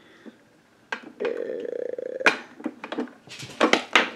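Small cosmetic containers being handled and rummaged through. A click, a buzzy scrape of about a second, a sharp snap, then a quick run of small clicks and clatter near the end.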